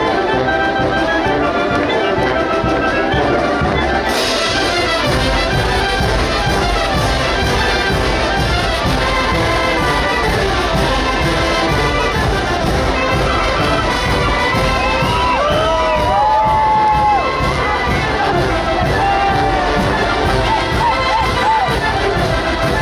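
A large Oaxacan wind band plays lively dance music led by trumpets and trombones, steady and loud throughout. A crowd cheers over it.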